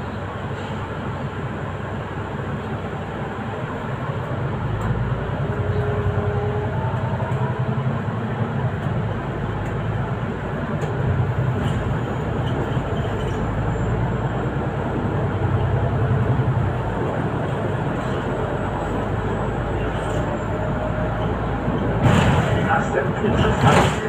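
Inside a Solaris Urbino 8.9 city bus on the move: steady engine rumble and road noise, with a faint whine rising in pitch a few seconds in. About two seconds before the end there is a louder burst of noise.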